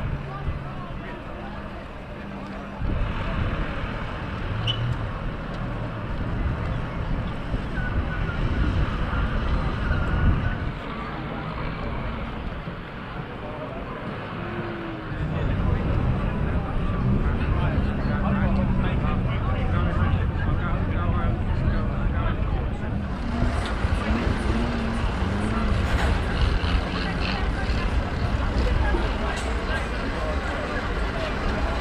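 Farm tractor engines running as they tow wrecked banger cars, with indistinct voices behind. The sound changes abruptly a few times where the footage is cut.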